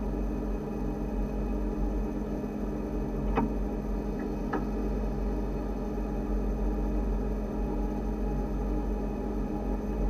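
Steady electrical hum and low rumble in the cab of an electric narrow-gauge train standing still, with two short clicks about three and a half and four and a half seconds in.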